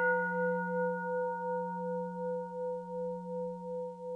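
A Buddhist bowl bell (qing) ringing on after a single strike, a low hum under several higher overtones that slowly fade, the sound pulsing gently as it dies away.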